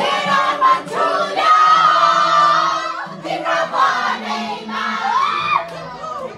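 A crowd of people singing and shouting together, many voices overlapping, with a long held note about a second and a half in and a steady low drone beneath.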